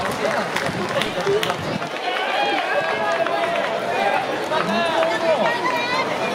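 Spectators' voices in the stands of a baseball game, several people talking and calling out over one another, with scattered sharp clicks.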